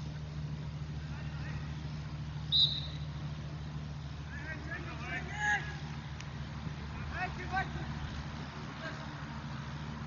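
Football players shouting on the pitch over a steady low hum, with one short, sharp referee's whistle blast about two and a half seconds in that is the loudest sound.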